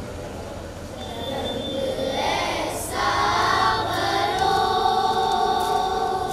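A group of schoolchildren singing together in chorus. Their voices rise in about two seconds in, and from about three seconds they hold long, steady notes.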